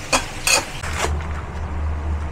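Metal spatula knocking twice against a stainless wok while duck and ginger sizzle in oil. The sizzle cuts off about a second in, leaving a low steady hum.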